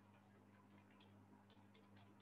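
Near silence: a steady low electrical hum with faint, irregular small ticks from about half a second in.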